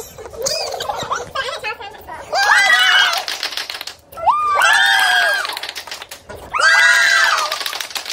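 A small group cheering with high-pitched whoops: three long shouts of about a second each, each one rising, holding and falling, over rapid clapping.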